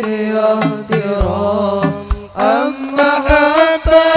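Sholawat devotional singing by male voices over a hadroh ensemble's rebana frame drums, with low drum strikes every so often. The voice drops away briefly about two seconds in, then slides up into a long held note.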